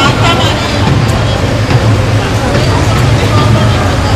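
Chatter of a large walking crowd over a steady low hum of vehicle traffic.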